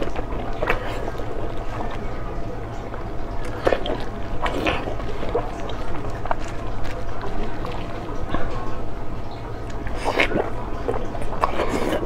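Close-miked chewing of fried fish, with wet mouth sounds and irregular sharp smacks and crunches, over a steady low hum.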